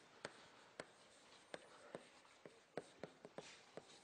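Chalk tapping and scratching on a blackboard as words are written: a quick, irregular run of faint taps.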